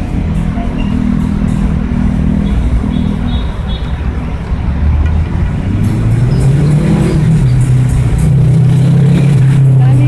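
A motor vehicle engine running close by, loud and low. Its pitch rises and its sound grows stronger from about six seconds in.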